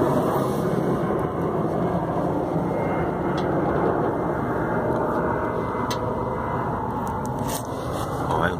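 A continuous rushing roar with no clear pitch, steady in level throughout, with a few faint ticks.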